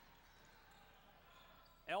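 Faint, even background noise of a basketball gym during play, with no distinct sound standing out. A man's commentary voice comes in at the very end.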